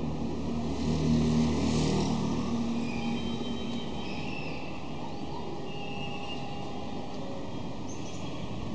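A motor vehicle's engine passing by, loudest about a second in and fading out after two or three seconds, over steady outdoor traffic noise, with faint high chirps later.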